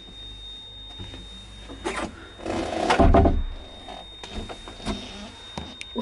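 A small lift's door being worked by hand: scattered clicks and a louder clatter about three seconds in, over a faint steady high whine.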